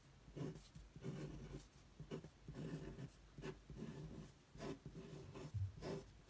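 Ballpoint pen drawing on paper, a faint run of short scratching strokes as circles and connecting lines are sketched, with a soft low thump near the end.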